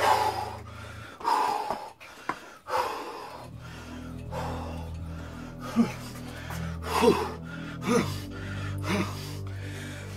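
Heavy, gasping breathing of a man straining through body rows on suspension straps, with four short sharp gasps or grunts about a second apart in the second half, one per pull, over background music.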